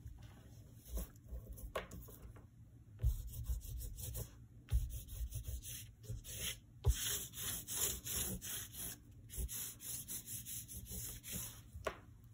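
A black oil pastel stick scratching and rubbing across drawing paper in rapid short strokes as an area is filled in. The strokes start about three seconds in, with a few dull knocks among them.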